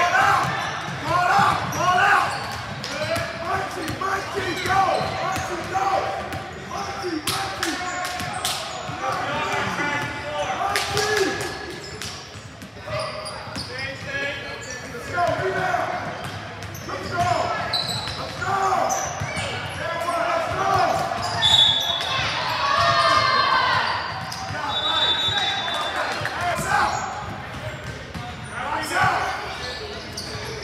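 Basketball being dribbled and bounced on a hardwood gym floor during a youth game, with players and spectators talking and calling out, echoing in the large hall. A few short high-pitched squeals come later on.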